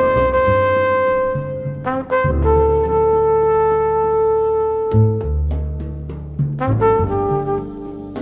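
Jazz music: a brass lead holds long notes over a walking bass and drums, one long note for about two seconds, then a lower one held for nearly three, then shorter phrases near the end.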